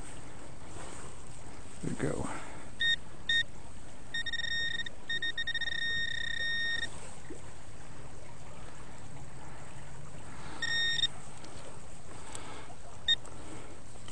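Garrett handheld metal-detecting pinpointer sounding one steady high tone: two short beeps, then a long tone for about three seconds with a brief break, and short bursts again later, the alert that it is on a metal target in the dig hole. A brief scrape of digging sounds about two seconds in.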